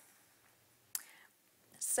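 A woman's breath sounds on a close speaking microphone just after a cough. There is a short sharp breath or throat sound about a second in, then a breathy intake near the end before she speaks again.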